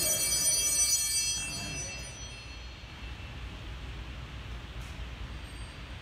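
Altar bells ringing at the elevation of the chalice and bread, fading out about two seconds in, followed by a steady low hiss.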